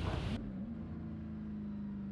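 Drift car engine holding a steady note, turning muffled about half a second in as the higher sound falls away.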